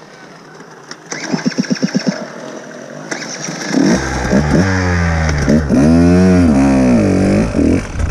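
Enduro dirt bike engine: a short run of rapid, evenly spaced pulses about a second in, then from about four seconds in it revs up and down loudly as the bike rides off.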